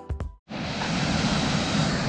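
Background music cut off, a moment of silence, then a steady rushing outdoor noise starts about half a second in and holds evenly.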